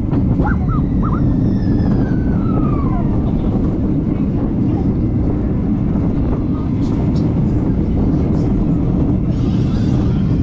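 Roller coaster ride heard from the front row: wind buffets the camera microphone as the train runs along the track. In the first three seconds a whine falls in pitch, and a few brief rider shouts come near the start.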